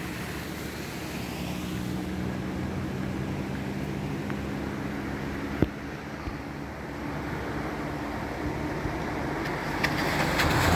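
A motor vehicle engine running with a steady low hum over an even rushing noise, with one sharp click about five and a half seconds in.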